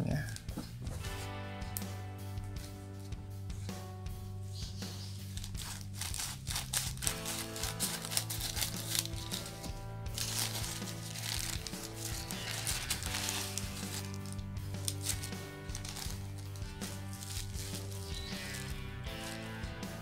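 Plastic courier mailer bag crinkling as it is handled and opened by hand, over background music with steady held tones.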